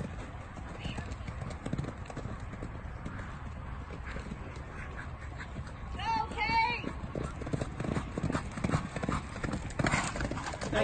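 Horse galloping on soft arena dirt, its hoofbeats growing louder over the last few seconds as it runs closer. About six seconds in there is a short, high two-part call.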